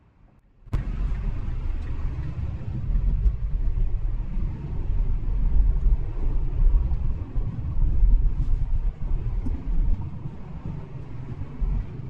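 Steady low road rumble and tyre noise inside the cabin of a moving Tesla electric car, with no engine note. It cuts in abruptly under a second in.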